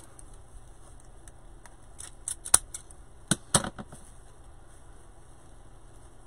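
Handheld cable-tie gun squeezed to tighten and cut zip ties: two clusters of sharp clicks and snaps, about two seconds in and again about a second later.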